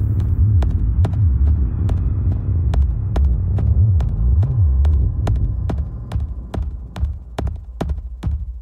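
Experimental electronic music: a heavy, throbbing sub-bass drone with sharp clicks scattered over it, roughly two or three a second. About six seconds in the bass thins out and the clicks stand alone.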